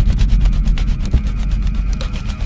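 Ominous sound-design drone under a horror-style title card: a loud, deep, steady bass rumble with dense rapid crackling clicks over it.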